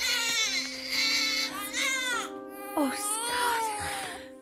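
A newborn baby crying on an animated show's soundtrack: about three wailing cries, each falling in pitch, over soft held music tones.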